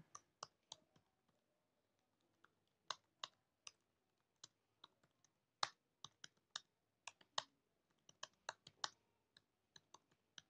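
Computer keyboard keys clicking in faint, slow, uneven typing, with a pause of about two seconds near the start.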